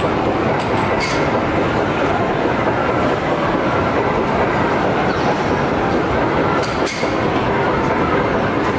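Loud, steady din of a busy arcade, with machines and crowd noise blending into one continuous rumble. There are a few sharp clicks about a second in and again near seven seconds.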